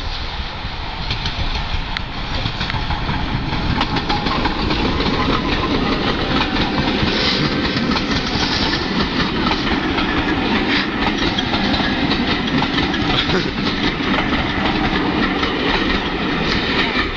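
A train passing close by: the loud, steady rush of wheels on the rails with rapid clicking through it, growing louder over the first four seconds and then holding.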